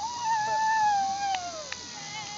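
A long, loud howl that rises slightly, holds near one pitch for about a second, then falls away; a second howl begins right at the end.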